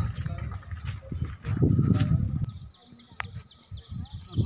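Low rumble on the microphone through the first half, then a bird's rapid high trill of short repeated notes, about seven a second, starting a little past halfway and running on.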